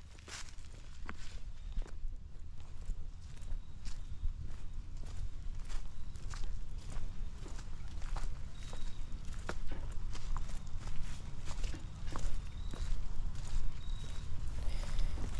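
Footsteps of hikers walking on a trail of dry fallen leaves and rock: an irregular run of crackling, rustling steps over a steady low rumble.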